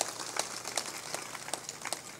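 A pause in a talk: faint room sound picked up by the microphones, dotted with small, irregular clicks and ticks.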